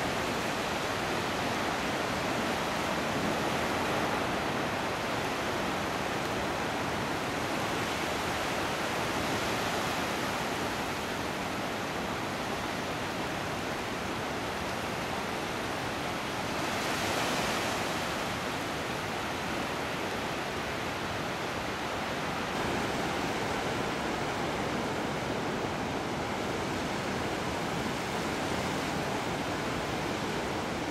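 Steady rush of sea surf washing onto a flat beach, swelling briefly a little past the halfway point.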